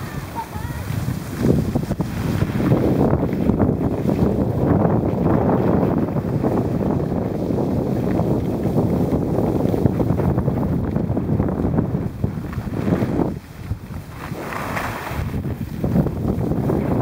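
Wind rushing over the microphone of a camera carried by a skier moving downhill: a loud, rough, steady buffeting that drops briefly about three seconds before the end and then builds again.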